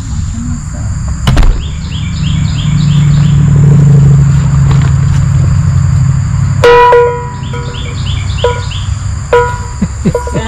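Rusty hand-rung cowbell: a sudden clank about two-thirds of the way in, then two or three lighter clanks, each ringing briefly. Before it there is a low steady rumble, with birds chirping.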